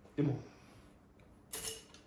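A brief metallic clatter, about one and a half seconds in, as the engine oil dipstick of a VW Passat 1.9 TDI is drawn out of its tube to check the oil level after a refill.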